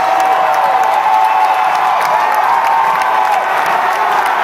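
A huge football stadium crowd cheering and yelling, loud and continuous, with many overlapping shouts and whoops and some clapping.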